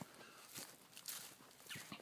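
Faint footsteps on dry leaves and dead grass: a few soft, irregular steps.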